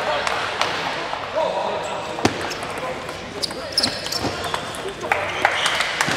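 Scattered sharp clicks of a table tennis ball bouncing, a few seconds apart at first and then a quick cluster near the end, not the steady back-and-forth of a rally. Voices echo in a large hall under them.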